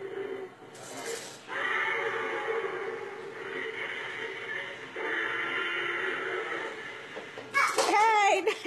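Battery-powered walking toy dinosaur running, with a steady whir from its motor and gears that breaks off briefly about five seconds in. Near the end comes a louder, wavering cry.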